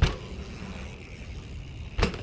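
Mountain bike hitting a dirt jump: a sharp knock right at the start and another at the very end as the bike pitches over in a crash, over a steady low rumble of wind on the microphone.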